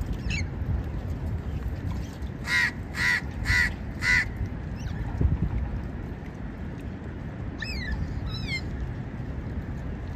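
A crow cawing four times in quick succession, harsh and evenly spaced, a few seconds in. Later come two short, high, falling chirps, over a steady low background rumble.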